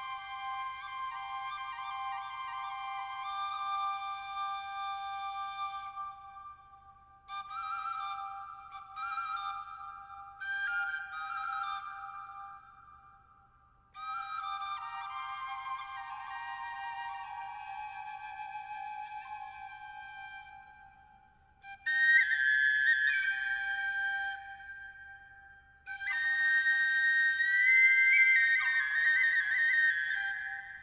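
Wooden Ukrainian double flute playing a folk dance tune: one pipe holds a steady low note while the other plays the melody above it. The melody comes in phrases broken by short pauses for breath, and the last phrases are louder and higher.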